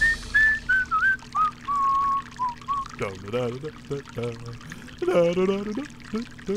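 A man whistling a short tune of falling notes over the steady trickle of urine into a toilet bowl, followed by a few low vocal sounds in the second half.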